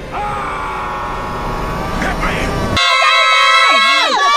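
A man's voice dragging out a long, held 'meeee' over film street noise, as in the captioned 'HIT MEEEEEE'. A little under three seconds in it cuts off abruptly to a bright, clean, heavily processed voice-like sound with several pitches sliding up and down.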